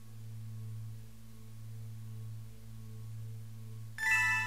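A steady low electronic drone of pure, sine-like tones, with a faint higher tone pulsing about three times a second.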